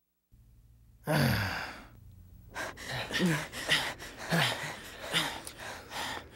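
A person out of breath: one loud gasping exhale about a second in, then quick, heavy panting, two or three breaths a second, as after running to escape.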